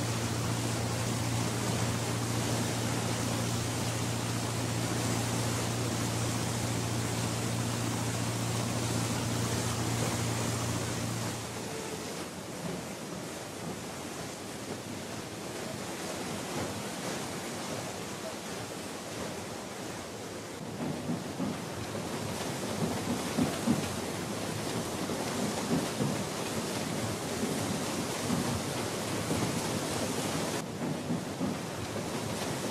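A steady low mechanical hum from a moored car carrier's machinery, over a haze of wind and ambient noise. About 11 seconds in, the hum stops and a crackling, rumbling noise takes over, growing louder and more uneven in the second half.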